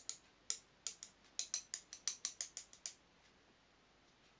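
Wooden chopsticks clicking together in a run of sharp taps that speeds up to about six a second, then stops about three seconds in.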